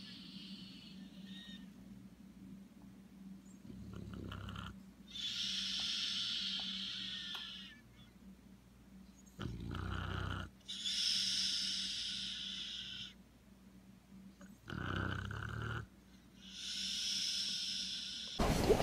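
A French bulldog snoring while lying on its back with its mouth open, in slow breaths. Each breath is a short, low snore followed by a longer, higher hissing rasp, three times over, about five seconds apart.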